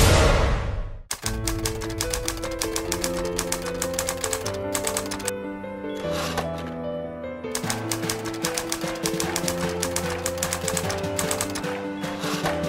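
Rapid typewriter clicking as a sound effect, pausing briefly around the middle, over slow music of long held notes. A loud burst of noise fades out in the first second.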